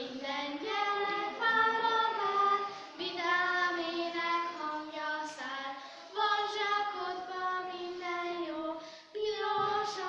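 Two young girls singing a Christmas song together, in phrases of held notes broken by short pauses for breath about every three seconds.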